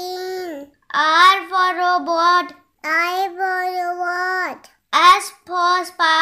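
A voice singing an alphabet phonics song letter by letter, in short phrases on a mostly steady pitch with brief pauses between them.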